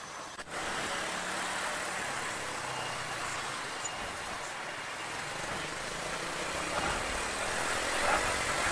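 Riding sound from a small single-cylinder motorcycle, a Keeway Cafe Racer 152, moving through city traffic: a steady rush of wind and road noise with the engine running underneath. There is a brief dropout about half a second in.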